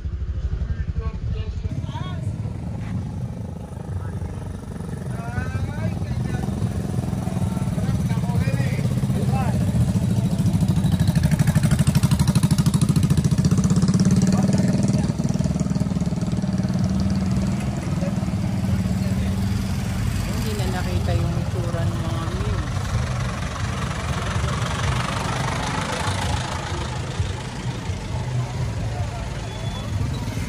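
Motorcycle engines of passing tricycles (motorcycles with sidecars) running at low speed, getting louder as one passes close about halfway through and then easing off, with people's voices in the background.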